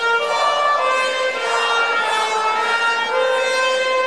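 Orchestral national anthem played over a stadium's loudspeakers, with long held notes.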